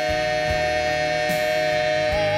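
Gospel singers holding one long, steady note in two-part harmony over instrumental backing.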